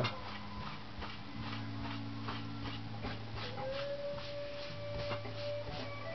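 Cloth rag rubbing over the dyed wood of a guitar body in soft repeated strokes, over a steady low hum. A long, steady whine holds for about two seconds in the middle.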